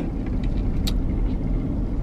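Steady low rumble of a car's engine and road noise heard inside the cabin, with one faint click about a second in.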